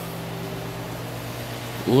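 Steady low hum with a faint hiss, a constant mechanical drone such as a fan or air handler in a large building.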